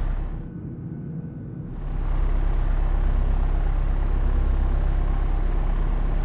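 Pipistrel Velis Electro's electric motor and three-blade propeller running on the ground: a steady hum of low tones with airy propeller noise. It drops away briefly about half a second in and comes back just before two seconds.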